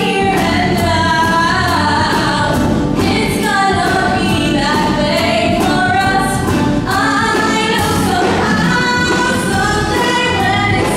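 A woman singing a pop-style musical-theatre ballad live, with sustained, gliding notes, over a live band of electric guitars, bass and keyboard.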